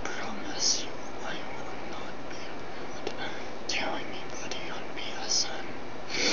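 A man whispering softly, a few breathy hissed sounds standing out over a steady background hiss.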